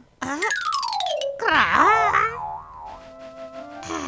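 Cartoon sound effects: a long falling whistle-like glide with a rapid ticking texture, then a wobbling tone about two seconds in, giving way to soft held notes of background music.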